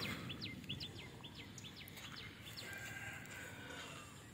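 Faint bird calls: a run of short, quick falling chirps over the first two seconds, then a thin held note about three seconds in, over low outdoor background noise.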